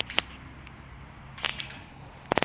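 Short sharp clicks or snaps: a close pair at the start and another pair about a second and a half later, over a faint low steady hum.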